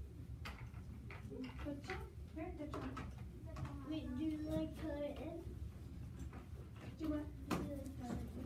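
Children's voices talking indistinctly, with a few light clicks and knocks scattered through.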